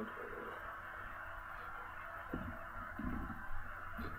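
Faint steady hiss from a mobile phone on speakerphone while a call is being placed, with a few soft low knocks from the phone being handled about two and three seconds in.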